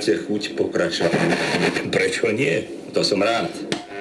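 A voice talking on an FM radio broadcast, played through the speakers of a Silva New Wave 7007 radio cassette recorder.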